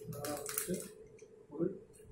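A quick run of clicks and rattles from a camera tripod being handled and adjusted, mostly in the first second.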